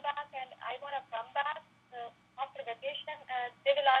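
Speech only: a caller talking over a conference-call telephone line, with the thin sound of a phone connection.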